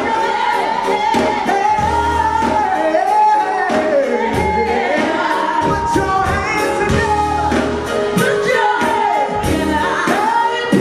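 Live gospel music: female and male vocalists singing into microphones over a band with keyboard and a steady beat.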